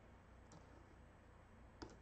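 Near silence broken by two faint computer mouse clicks: a soft one about half a second in and a sharper one near the end.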